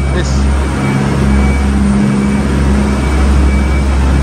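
Steady, loud low rumble with a constant droning hum from an idling engine.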